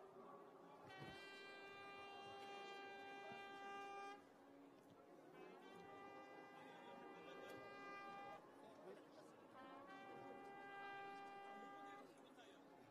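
A faint horn blown in three long, steady notes of about three seconds each, all on the same pitch.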